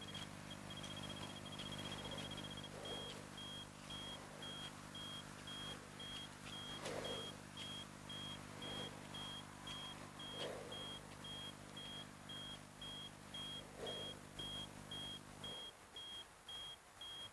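High electronic beeping, about two short beeps a second, over a low steady droning hum that cuts off near the end; soft whooshing swells come every couple of seconds.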